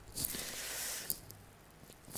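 Ballpoint pen scratching on paper for about a second while writing out figures, quiet, with a faint click near the end.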